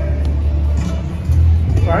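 Outdoor city street background: a steady low rumble with faint music playing behind it.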